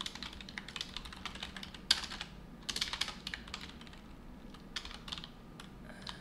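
Computer keyboard typing: irregular runs of key clicks, with one louder keystroke about two seconds in.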